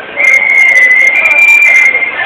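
A high, steady whistle held for about a second and a half, stepping up a little in pitch partway through and dropping back near the end.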